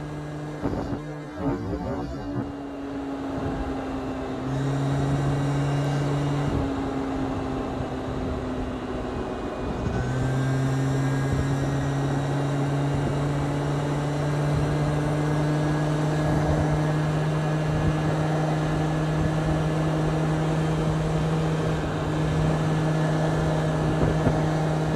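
Aprilia SR50 scooter's two-stroke engine running under way at a steady cruising speed, with wind and road rush. About ten seconds in the note briefly dips as the throttle eases, then it picks up again and holds, rising slightly in pitch.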